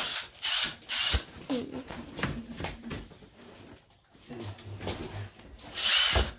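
Clunks and scrapes of a flat-screen TV and its mounting brackets being lifted and hooked onto a wall mount, with several short knocks in the first second or so and a louder burst right at the end.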